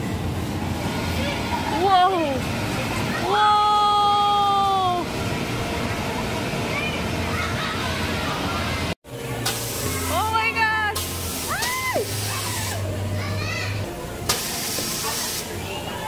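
Children shouting and calling over the steady hubbub of an indoor soft-play area, with one long held call early on. After an abrupt cut about nine seconds in come more short cries and several bursts of hissing air.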